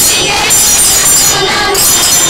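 Group of women singing a devotional bhajan together, with hand-clapping and jingling metal hand cymbals on a steady beat of about two strokes a second.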